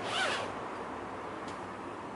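Zipper being drawn shut along the mesh compartment in a suitcase lid, with a quick zip near the start and a quieter rasp after it.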